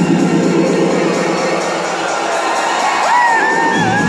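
Electronic dance track played live over a club sound system during a breakdown: the bass drops out and the crowd cheers over it. About three seconds in, a high wavering melodic line glides in, and the bass comes back just before the end.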